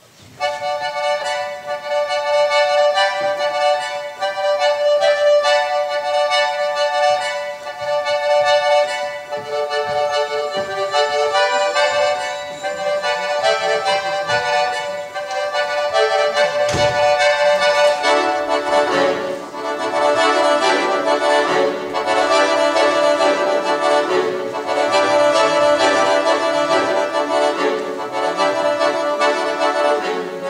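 Solo accordion playing a contemporary concert piece. It opens abruptly on a long held high note over shifting chords, and a lower voice joins partway through. A short sharp thump comes a little past halfway, and fuller, denser chords follow for the rest.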